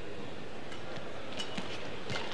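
Steady background noise of an indoor badminton hall during play, with faint short sharp sounds of the rally starting about a second and a half in.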